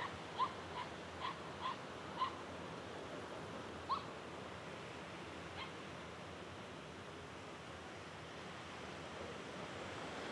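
A run of short, high, pitched animal cries, about two or three a second for the first couple of seconds, then two more single cries, over a faint steady hiss.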